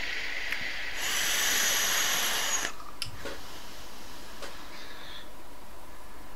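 A long drag on a vape: air hisses through the atomizer and the coil sizzles for nearly two seconds, starting about a second in, followed by fainter hiss.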